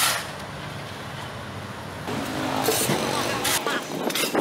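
Street traffic with motorbikes running past, opened by a short loud scrape of a shovel on rubble and pavement.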